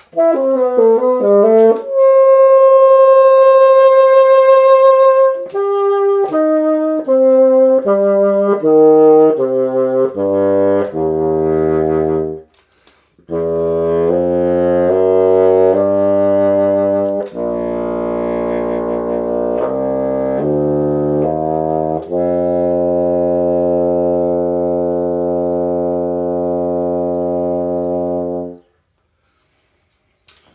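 Bassoon fitted with a Wolf Grundmann straight-bend bocal playing a written passage. It opens with a quick run and a long held note, then steps down note by note into the low register. After a brief pause come more notes and a long, low held note near the bottom of the instrument's range that stops shortly before the end.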